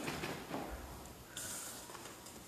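Quiet room noise from a seated congregation: faint rustling and shuffling, with a short hiss of rustling about one and a half seconds in.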